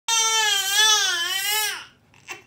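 Newborn baby crying: one long wail that wavers in pitch and falls away near the end.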